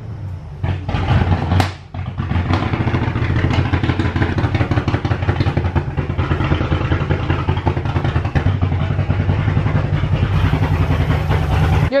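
Cadillac CTS-V's supercharged 6.2-litre V8 idling loudly and steadily, just after being started; the car had sat for months. The sound dips briefly about two seconds in, then runs on evenly.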